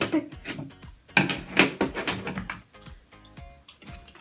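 A plastic toy canister and scissors being handled on a tabletop: a run of clicks, taps and knocks, the loudest a little over a second in. Light background music is faintly under it.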